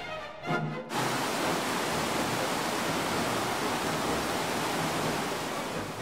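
Orchestral music for about the first second, then cut off. After that comes the loud, steady rush of a glacier-fed mountain torrent cascading over rocks.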